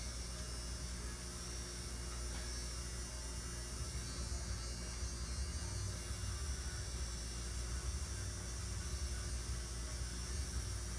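A steady low hum with a faint hiss: room tone, with no distinct events.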